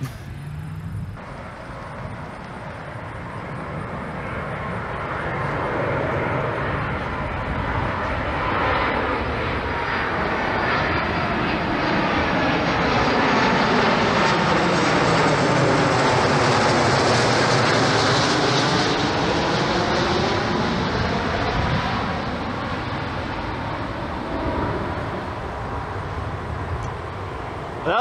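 DHL cargo jet climbing out just after takeoff and passing overhead. The jet engine noise swells, peaks about halfway through, then fades, with a sweeping, phasing whoosh as it goes over.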